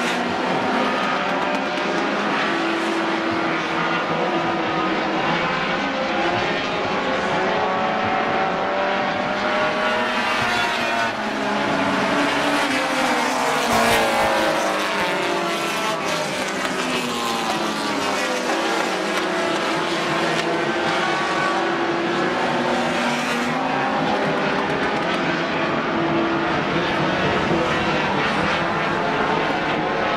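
A pack of four-cylinder dash-series stock cars racing on a paved oval, engines held at high revs. The engine notes rise and fall and cross one another as cars pass, loudest about 14 seconds in.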